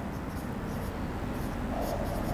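A marker writing on a whiteboard: faint, steady strokes of the pen tip over a low room hum.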